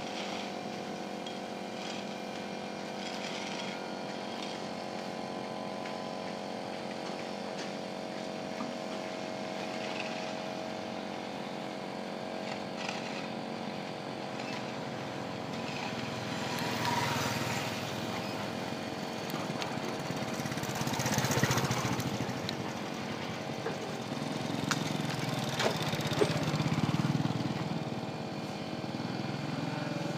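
Drive motor of a Jianxing 670B electric retractable stainless-steel folding gate running steadily with a hum of several held tones as the gate travels. A motorcycle passes through in the second half, rising and falling, loudest a little past two-thirds through. Then the gate motor runs again as it closes.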